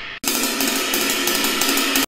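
Ride cymbal played fast with a wooden drumstick: a bright, continuous wash with rapid stick strokes. It fades, cuts out for an instant a fraction of a second in, then starts again.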